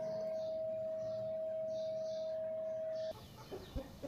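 Steady single-tone electrical hum from a home-made wooden egg incubator that is switched on and running, its heating bulb lit. The hum cuts off sharply about three seconds in, and a few faint chicken sounds follow near the end.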